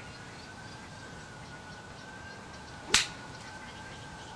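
A 5-iron striking a golf ball on a short half swing for a low punch shot: a single sharp click about three seconds in.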